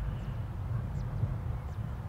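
Outdoor ambience on a golf course: a steady low rumble, typical of wind on the microphone, with a few faint, brief high chirps.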